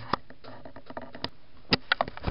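A few light, sharp clicks and taps of handling around a computer case, the loudest pair about three-quarters of the way through.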